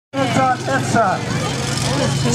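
A small utility vehicle's engine running steadily, a low hum under a man's voice calling out.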